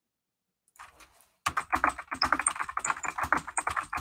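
Fast typing on a computer keyboard: a quick, steady run of key clicks that starts about a second and a half in.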